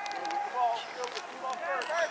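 Several voices calling out at once from across a soccer field, overlapping and indistinct, with a few faint ticks among them.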